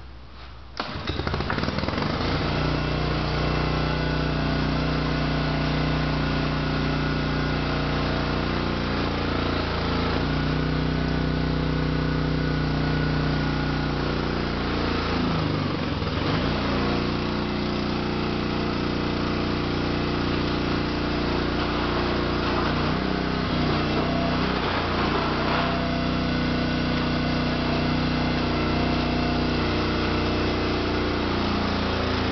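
The engine of a hydraulic power unit starts about a second in and runs steadily, driving the ram of a homemade can crusher. Around halfway, and twice more near the end, the engine pulls down in pitch and recovers as the ram reaches full pressure on the cans.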